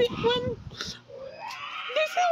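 A child's voice making an animal noise: a rough, gravelly grunt, then a long note that slowly rises in pitch.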